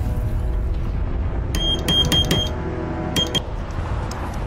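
Short high-pitched Morse code beeps from a radio signal in a quick irregular run of about five, then two more about a second later, over a low steady drone of film score.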